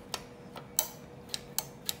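Hand-operated lever meat slicer working through frozen pork belly: about five sharp metal clicks, unevenly spaced, from its stainless blade lever and meat guide.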